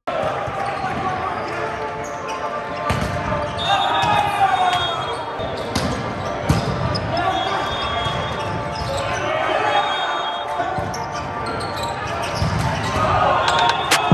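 Live sound of an indoor volleyball rally in a gym: voices calling out over the play and the ball knocking off hands and the floor, echoing in the large hall, with a few short high squeaks.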